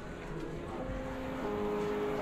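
Low rumble of city street ambience, with soft music of long held notes coming in about a second in.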